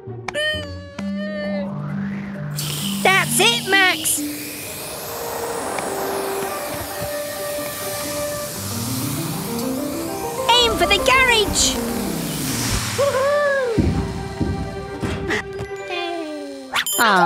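Cartoon soundtrack: a long hiss of air rushing out of a tyre, used as a jet-whoosh effect, over background music. Wordless voice exclamations sliding up and down can be heard, and near the middle there are quick rising and falling musical runs.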